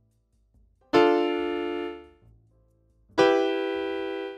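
Piano chords played one beat at a time on a keyboard to enter them into a score. Two chords are struck about two seconds apart, about a second and three seconds in, and each is held for about a second before being released.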